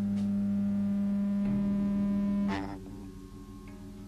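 A sustained note from an amplified electric guitar ringing on as a steady low drone, then cut off with a sharp click about two and a half seconds in, leaving a quieter leftover ring from the amps.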